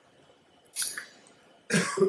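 A single short cough-like burst from a person about three-quarters of a second in, between stretches of quiet room tone.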